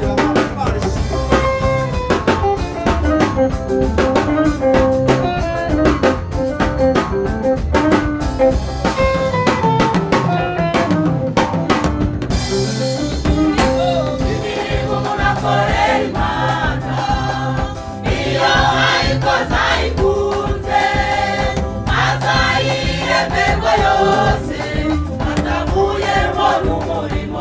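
Church choir singing a Rwandan gospel song live, voices in harmony over a drum backing. The drums drop out briefly about halfway through while the singing carries on.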